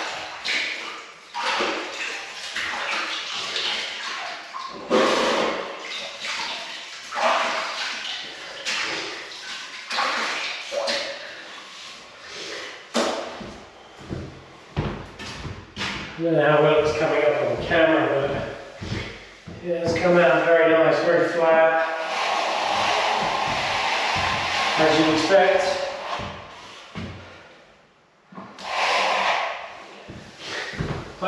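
Steel plastering trowel scraping over setting plaster on a wall in a run of strokes, about one a second: the wet-trowelling stage of a skim coat. A man's voice is heard over it in the middle.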